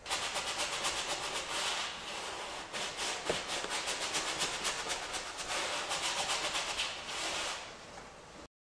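A wide flat paintbrush worked in quick back-and-forth strokes over a stretched canvas, blending oil paint: a rapid brushing scrub that stops shortly before the end.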